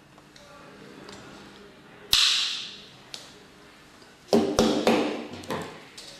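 A hand stripping tool working a rubber-insulated fiber-optic cable. There is one sharp snap with a short hiss about two seconds in, then a quick run of clicks and snaps a little past four seconds as the tool bites and the jacket is pulled off.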